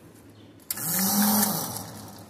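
Electric hose reel's battery-powered rewind motor switching on with a click about two-thirds of a second in and running as it winds in the hose, its hum rising and then falling in pitch as it slows.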